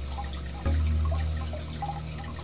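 Aquarium water trickling over a steady low hum; the hum steps up in level a little over half a second in.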